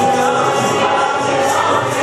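Music with a group of voices singing together over a steady, evenly paced percussive beat.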